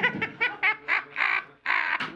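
Men laughing: a quick run of short laughs, then two longer ones with a brief break between.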